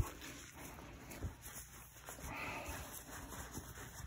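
Faint rubbing of a microfiber towel over a pool ball, wiping off the last of the polish. A short knock comes right at the start and a softer one about a second later.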